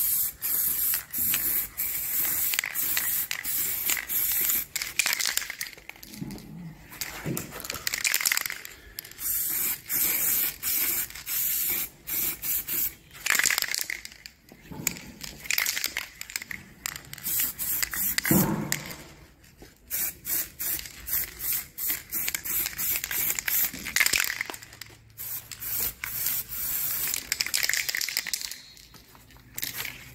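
Aerosol spray paint can hissing in many short bursts with brief pauses between them, as a coat of paint is sprayed onto a car wing panel.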